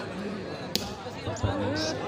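A volleyball struck by hand: one sharp smack a little under a second in, and a softer hit about a second and a half in. Crowd voices carry on underneath.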